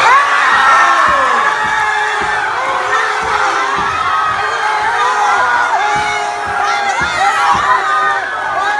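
Crowd cheering and screaming, many high voices at once, breaking out suddenly and carrying on loudly.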